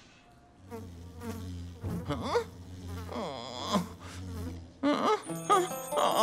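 Cartoon bee buzzing as it flies around, a steady low drone with a pitch that swoops up and down as it moves. Light music comes in near the end.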